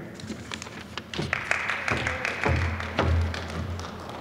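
Light taps and knocks picked up by a lectern microphone as papers are gathered and the speaker steps away. A steady hiss runs through the middle, with a low hum in the second half.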